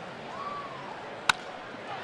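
Ballpark crowd noise, with a single sharp crack of a wooden baseball bat hitting a pitched ball a little past halfway through.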